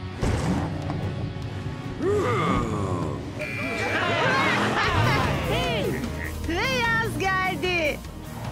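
Cartoon characters' voices laughing and whooping in quick repeated bursts over steady background music.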